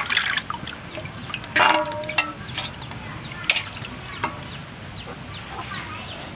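Wet handling of a raw plucked chicken in a plastic basket, with scattered clicks and knocks and a louder rustling burst about one and a half seconds in. Poultry call faintly in the background.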